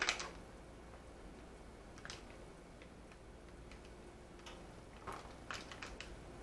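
Cheddar cheese being sliced and laid on a wooden cutting board: a sharp knock right at the start, then a few scattered light taps and clicks, over a faint steady hum.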